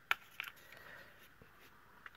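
Metal Crop-A-Dile hole punch snapping through a cardstock strip: a sharp click just after the start, a smaller click shortly after, then a few faint ticks as the card is handled.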